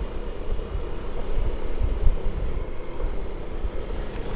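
Yamaha Mio M3 125 single-cylinder scooter running at low riding speed, heard as a steady low rumble mixed with road and wind noise.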